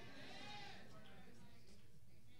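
Quiet hall room tone with a faint, distant, wavering voice in the first second.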